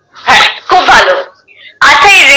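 Two short, breathy vocal bursts from a person, heard through a video call's audio, the first a quarter of a second in and the second just under a second in, with talking starting near the end.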